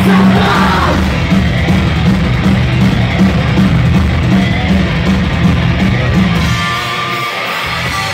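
A punk rock band playing loud live: distorted guitars, bass and drums with shouted vocals, heard from inside the crowd. The deep bass drops away for a moment near the end.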